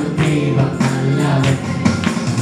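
Several male voices singing a Malayalam worship song together over an electronic Yamaha keyboard, with a steady percussive beat about twice a second.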